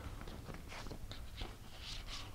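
Faint clicks and rustling of pieces being handled on a hanging demonstration chessboard, with a slightly louder rustle near the end.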